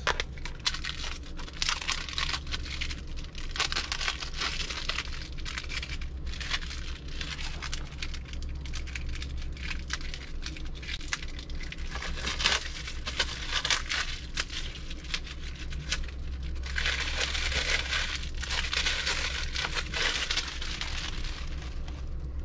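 Plastic wrapping on a carbon-block water filter cartridge crinkling and tearing as it is peeled off by hand, in irregular bursts throughout.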